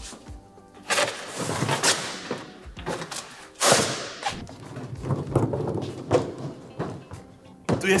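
Knocks and thuds of a wooden board being lifted and moved on top of a large plastic barrel, the loudest about a second in and again near four seconds, over background music.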